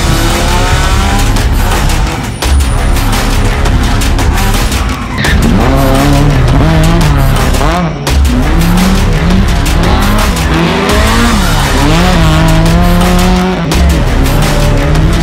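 Rally car engines revving hard, their pitch climbing and dropping again and again through gear changes, with background music underneath.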